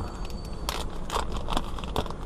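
Plastic trading-card pack wrapper crinkling as it is pulled open, with a few sharp crackles.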